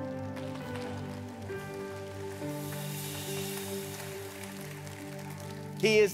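Soft live worship-band music: held chords that change every second or so, with no singing. A man's voice comes in right at the end.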